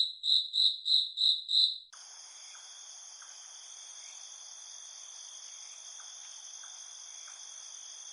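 Crickets chirping in a regular rhythm, about three high chirps a second. About two seconds in this changes to a continuous high trill holding several steady pitches over a faint hiss.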